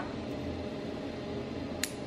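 A single sharp snip near the end as carbon-steel bonsai shears cut through a small juniper branch, over a steady low room hum.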